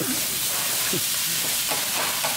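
Fried rice sizzling steadily on a large flat iron griddle while being stirred and chopped with two metal spatulas.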